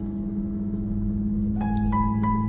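Intro background music: low notes held steady, with plucked, bell-like notes coming in near the end.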